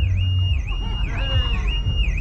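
Car alarm sounding: a high, steady electronic tone that dips and springs back about twice a second.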